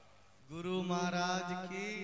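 A man's voice holding one long chanted note, amplified. It starts about half a second in, after a brief hush, and fades away near the end.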